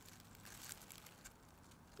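Near silence: only faint background hiss, with no distinct sound.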